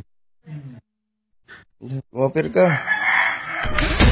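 A rooster crowing once, a drawn-out call over a person's voice, followed by a loud burst of noise near the end.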